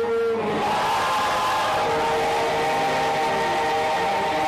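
Live church worship music: long held chords with voices sustaining notes, moving to a new chord about half a second in.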